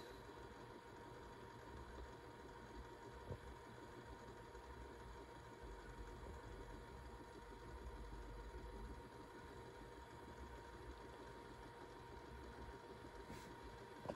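Near silence: faint room tone with a low rumble, a thin steady tone and a small click about three seconds in.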